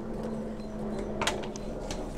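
Two short, sharp clicks, about a second in and near the end, as a mango cutting and pruning scissors are handled, over a low steady hum that fades out.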